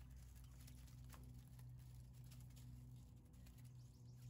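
Faint, scattered ticks and rustles of quail pecking at mealworms and scratch grain in dry leaf litter, over a low steady hum.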